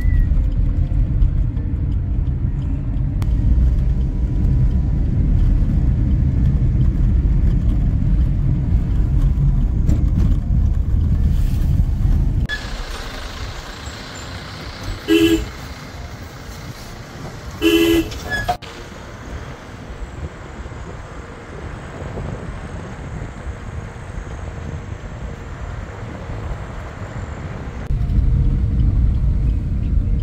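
Road and engine noise of a car driving, heard inside the cabin: a strong low rumble that drops much quieter for a stretch in the middle, then returns near the end. A vehicle horn gives two short toots about halfway through, a couple of seconds apart.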